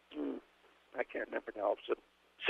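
Quiet speech from a man over a telephone line: a few short words or syllables.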